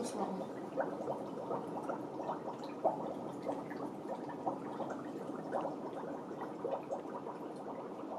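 Dry ice bubbling in a glass bowl of warm water: a steady churning of many small pops as the dry ice gives off carbon dioxide gas.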